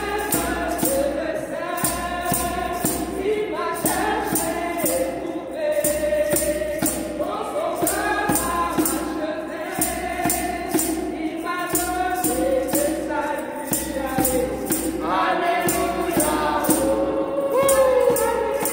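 A small group of women singing a gospel hymn together, with a djembe hand drum and a jingling hand percussion instrument keeping a steady beat of a little over two strokes a second.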